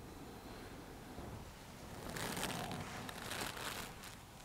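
Clothing rustling for under two seconds from about halfway through, as hands shift on a seated person's jumper and shoulders. Before it there is only quiet room tone.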